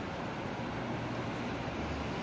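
Steady street traffic: cars driving past at a city intersection, a continuous wash of engine and tyre noise.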